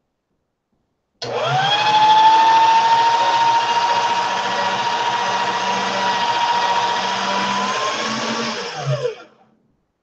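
Motorized pasta machine rolling a sheet of polymer clay through its rollers on a thin setting. The motor whine spins up about a second in, holds steady, then winds down and stops near the end.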